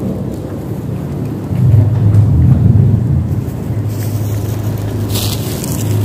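A low rumble, loudest from about a second and a half to three seconds in, over a steady low hum.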